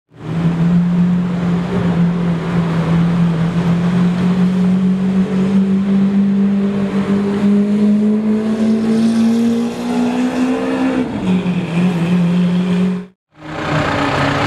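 Lamborghini Aventador V12 engine pulling at low revs: one strong, steady note that creeps slowly higher, then drops in pitch about eleven seconds in, and cuts off suddenly near the end.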